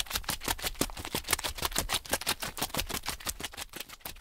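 Footsteps crunching on a gravel mountain path in a rapid, even run of about eight to nine steps a second.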